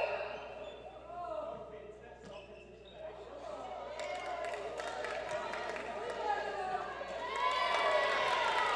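Faint talk echoing in a large indoor sports hall, with a scatter of light knocks and thuds from about halfway through, such as footwork or a ball on the wooden court.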